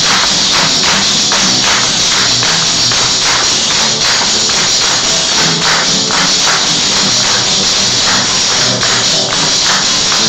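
Live Chilean cueca played on strummed acoustic guitars, with a tambourine jingling throughout and accenting a steady, quick beat. No singing.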